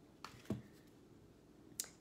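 Tarot cards being handled as one is drawn from the table: two soft clicks about a quarter and half a second in, and another short sound near the end.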